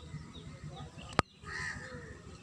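Outdoor background of rustling with birds calling, a harsh call near the end. A single sharp click a little over a second in is the loudest sound, followed by a brief dropout.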